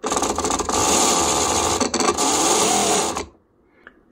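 Sewing machine motor switched on at low speed, turning its pulley inside the clamped wooden arm of a prony brake dyno. It runs loud and steady for about three seconds, then cuts off suddenly.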